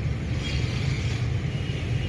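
Steady low rumble of car engine and road noise heard from inside the cabin of a moving car.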